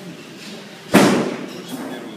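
A single sudden loud thump about a second in, with a short fading ring after it.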